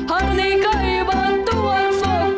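A boy singing a Romanian folk song into a microphone, his voice sliding and ornamenting the notes, over electronic keyboard accompaniment with a steady pulsing bass.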